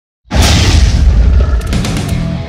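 A sudden, loud, deep boom hit that opens the intro music, starting a moment in and rumbling on.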